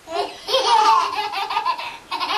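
Toddlers giggling: a short burst of laughter, then a longer, high-pitched stretch of laughter from about half a second in.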